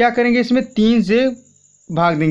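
A man speaking Hindi in two short phrases, with a faint, steady high-pitched trill running behind the voice.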